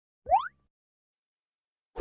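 A short cartoon pop sound effect with a quick upward pitch glide, about a quarter second in.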